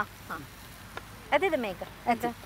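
Ducks quacking: a short quack early on, then a quick run of quacks a little past halfway.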